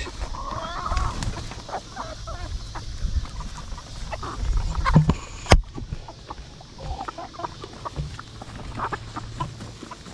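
Backyard chickens clucking intermittently as they feed, with a single sharp click about five and a half seconds in.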